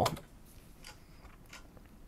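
A few faint, sharp clicks from working the computer controls to start playback, over quiet room tone.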